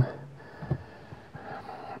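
A pause in a man's talking: quiet small-room sound with a single soft click about two-thirds of a second in.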